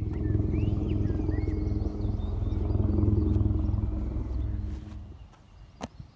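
An engine running close by, loud and low, swelling at the start and fading out about five seconds in, with a few bird chirps early on and a short click near the end.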